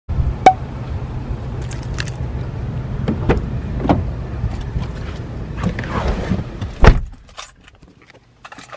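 Footsteps and clicks of someone walking up to a car and opening its door over steady outdoor rumble, with a sharp click about half a second in. A Kia's car door shuts with a thump about seven seconds in, after which the outside noise drops to the quiet of the closed cabin.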